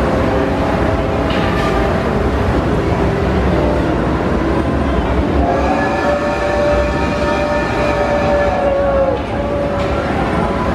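Hogwarts Express replica steam locomotive sounding its whistle: one long whistle starting about halfway through, steady in pitch and dipping slightly as it ends, over steady background noise.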